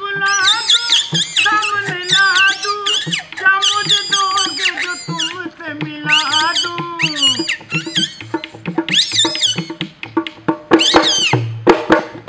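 Puppet-show music for a Rajasthani string-puppet dance: high, squeaky, warbling calls that slide up and down in quick runs, the kind a puppeteer's reed whistle (boli) makes to voice the puppets, over a light drum beat.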